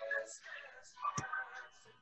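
Faint, indistinct voices of people talking quietly in the background, with a short click about a second in.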